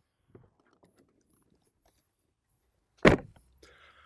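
A motorhome's habitation door slammed shut once, a single loud thud about three seconds in, after near silence.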